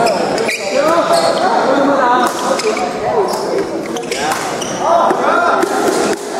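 Badminton rackets striking a shuttlecock during a doubles rally, several sharp hits spaced about a second apart, echoing in a large gym hall, under continuous voices talking.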